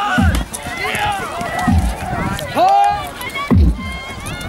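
A low drum beat struck about every one and a half seconds, the stone count that times play in Jugger. Players and spectators shout and call out over it.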